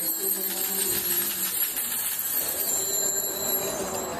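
Malankara liturgical chanting: a voice holding sung notes between chanted phrases, with small bells jingling lightly.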